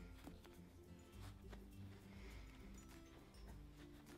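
Near silence with faint background music playing softly.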